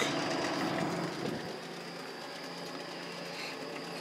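Steady hum of a room air conditioner running, with a faint high-pitched whine over it.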